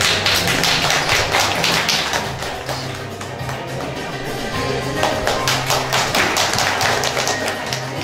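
Background music playing while an audience claps; the applause is strongest during the first two seconds and again from about five seconds in.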